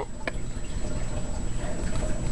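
Soft handling noise as a hand works inside a small plastic pet carrier lined with fleece, with one light click about a quarter-second in, over a steady background hiss.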